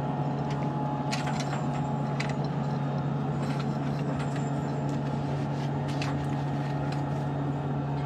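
Steady low hum of the International Space Station's cabin ventilation fans and equipment, with a few faint clicks.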